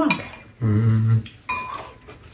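Metal spoons clinking against ceramic bowls during a meal: one sharp clink with a short ring about a second and a half in, and lighter taps around it. Just before the clink there is a short, steady, low hum.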